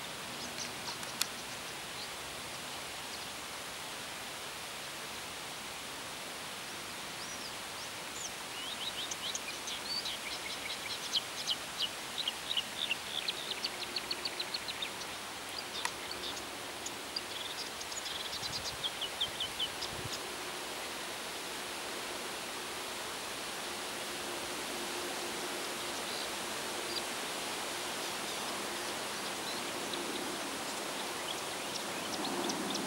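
Steady outdoor hiss of wind and rippling river water, with a small bird singing rapid runs of high chirps from about eight seconds in until about nineteen seconds.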